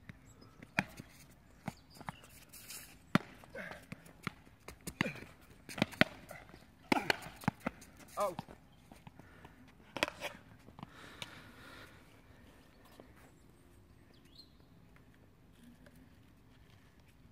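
Irregular sharp knocks and taps of ball play on a rushball court, mixed with faint voices. They thin out after about ten seconds, leaving only a low background.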